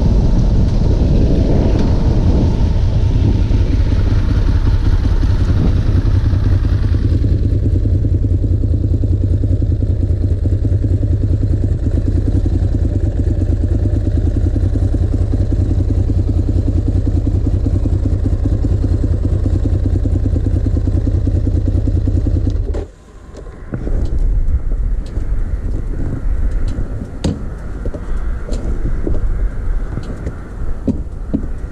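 Ducati Monster S2R 1000's air-cooled L-twin engine, first running on the move with wind noise, then idling with a steady low pulse from about seven seconds in. Near the end the sound briefly drops out and comes back as an idle with scattered sharp clicks.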